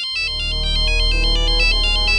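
Mobile phone ringing with a fast, high-pitched electronic ringtone melody. A low droning background score comes in underneath just after it starts.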